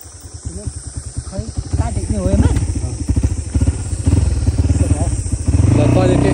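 Dirt bike engine running under way, its fast low firing pulses throughout, getting louder and steadier near the end as it picks up revs.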